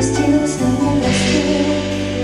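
A woman singing live into a microphone over a band with bass guitar, holding long notes.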